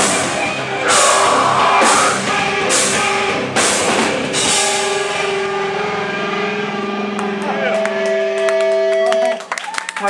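Hardcore band playing live, ending a song: drums hit with repeated cymbal crashes over distorted guitar for the first few seconds, then a final chord rings out steadily until it is cut off suddenly near the end, followed by scattered claps.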